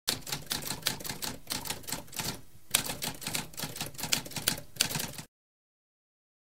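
Typewriter keys striking in a rapid, uneven run, with a short pause about halfway through, then cutting off suddenly a little after five seconds.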